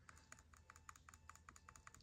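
Faint, quick typing on a computer keyboard, about eight keystrokes a second, as a search term is typed in.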